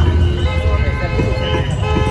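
Vehicle horns honking in busy road traffic, held steady tones from about half a second in, over a loud low rumble, with people talking.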